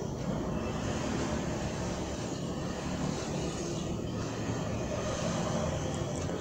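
Steady low background rumble with no distinct strokes or clicks.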